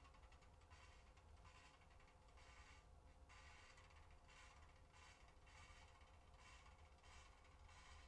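Near silence: room tone with a low hum and faint, patchy hiss.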